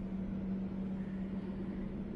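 A steady low machine hum: one held tone with a fainter overtone above it, over a low rumble.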